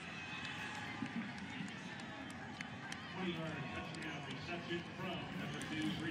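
Faint stadium ambience on a football broadcast: low background noise with indistinct voices, quieter for a few seconds between stretches of commentary.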